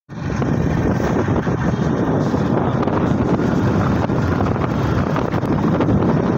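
Steady wind rush buffeting the microphone on a moving motorcycle, with the bike's engine and tyre noise blended in.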